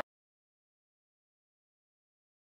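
Complete silence: the sound track cuts off right at the start.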